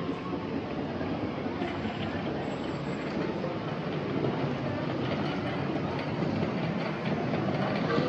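Steady background noise of a large, busy store: a continuous rumbling hum with indistinct voices mixed in.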